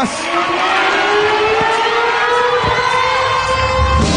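A male singer holds one long vocal note into the microphone, its pitch slowly rising, over a cheering concert crowd.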